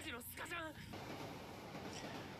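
Faint dialogue from the anime episode playing quietly in the background: a character's voice for about the first second, then only faint hiss.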